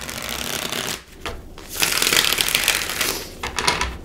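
A tarot deck being riffle-shuffled by hand, twice: a short rapid fluttering riffle at the start and a second, longer one about two seconds in, followed by a few light taps as the deck is squared.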